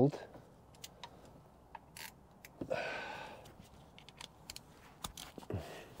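Hand ratchet on a long extension tightening a bolt on a Volvo D13 timing gear cover: scattered small metallic clicks, with a louder rasp about three seconds in.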